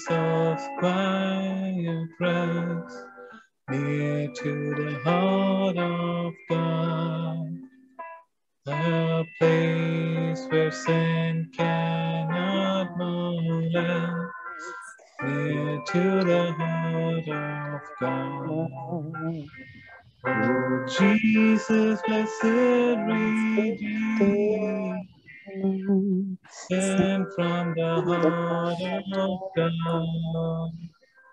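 A hymn sung by a man over keyboard accompaniment, in long held notes with short breaks between phrases.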